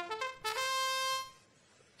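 Match-start fanfare: a quick rising run of short trumpet-like notes, then one held note that cuts off after less than a second, signalling the start of the match's autonomous period.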